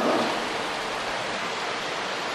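A steady, even hiss with no voice, as the tail of the last word dies away in the first half second.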